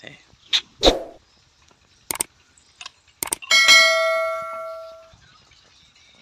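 Two sharp clicks a little over a second apart, then a single bell ding that rings out and fades over about a second and a half: the sound effect of an on-screen subscribe-button and bell-icon animation.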